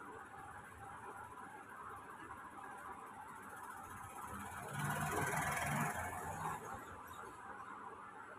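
Hands rubbing and squeezing long hair soaked in coconut oil, with a louder rustle lasting about a second just past the middle, over a faint steady background hiss.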